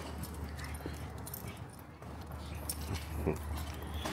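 Light jingling and clicking of dog-leash hardware and footsteps on a concrete sidewalk over a low steady rumble, with one brief voice-like sound about three seconds in.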